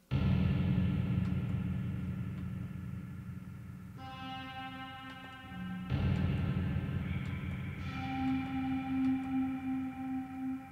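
Electronic keyboard playing deep, sustained synth chords in an ethereal improvisation. The first chord starts suddenly and slowly fades, and a second is struck about six seconds in. A higher held tone sounds above them from about four seconds in and again near the end.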